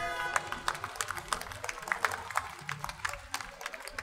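The choir's last held chord and its accompaniment die away just after the start, then the audience claps: many separate, uneven hand claps.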